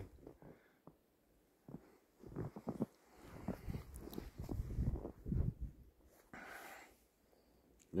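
A person laughing quietly, on and off in short spells for several seconds.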